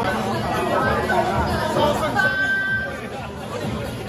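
Overlapping chatter of a banquet crowd, many voices talking at once, with music underneath. About halfway through, a single high note is held for under a second above the talk.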